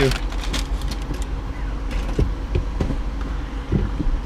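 A vehicle's engine idling with a steady low hum inside the cabin, with a paper fast-food bag rustling and crinkling in the first second or so and a few soft thumps in the second half.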